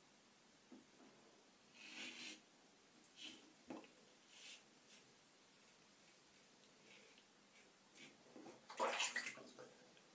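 Mühle R106 safety razor with a Gillette 7 O'Clock Sharp Edge blade scraping through lathered stubble in short, quiet strokes, a few seconds apart. A louder burst of sound comes near the end.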